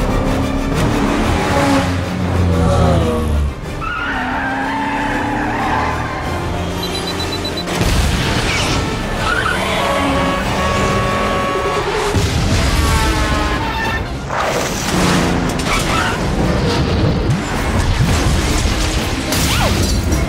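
Action-scene soundtrack: a dramatic music score mixed with booms and sudden impacts, along with car engine and skidding noise.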